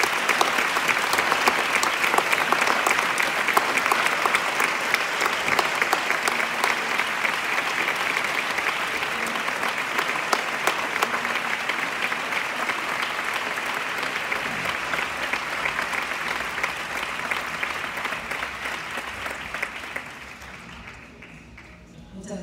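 Audience applauding: a long, steady round of clapping that fades away near the end.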